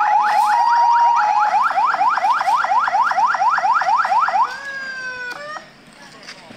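Electronic vehicle siren yelping: rapid rising sweeps at about five a second, with a steady tone running alongside in places. About four and a half seconds in it switches to a held tone, then cuts off shortly before the end.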